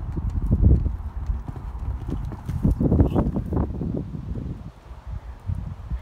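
A horse's hooves striking the ground in a run of rhythmic thuds, loudest about a second in and again around three seconds, easing off near the end.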